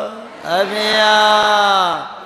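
A Buddhist monk chanting in a single male voice. After a short break for breath, he holds one long note from about half a second in, and it sags slightly in pitch just before it stops.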